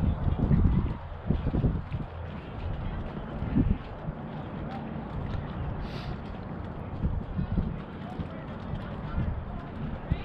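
Wind buffeting the microphone: a gusty low rumble, heaviest in the first second and again about three and a half seconds in, with a brief hiss about six seconds in.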